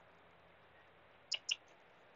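Two quick, squeaky kissing sounds made with the lips, a handler's cue urging the horse forward into trot, about a second and a half in.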